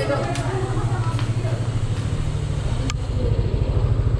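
Motorcycle engine idling, a steady low pulsing that grows louder toward the end.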